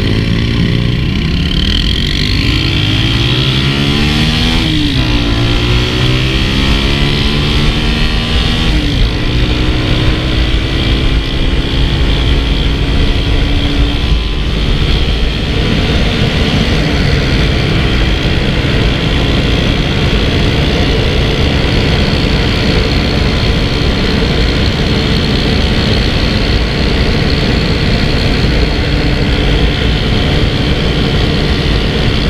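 2022 Zamco 250 motorcycle engine pulling away, its pitch rising through the gears with shifts about five and nine seconds in, then cruising at a steady pitch. Wind rushes over the microphone throughout.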